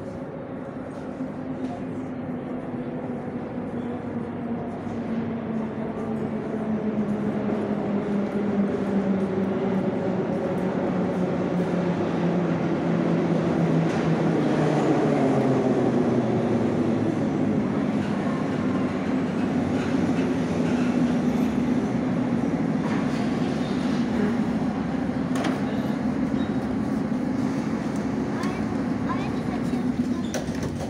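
81-717.5P metro train pulling into the station, its motor whine sliding down in pitch as it brakes and growing louder as it nears, then settling to a steady hum as it stands at the platform. A few sharp clicks come near the end.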